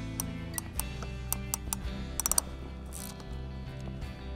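Hand crimping tool clicking as it closes a copper eyelet lug onto heavy battery cable: a series of short clicks, with a quick cluster a little past the middle, over steady background music.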